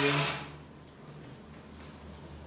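A short rush of noise at the start, then quiet room tone with a faint, steady low hum.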